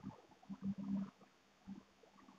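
Faint, intermittent strokes of a marker writing on a whiteboard, short scratches with brief pauses between them.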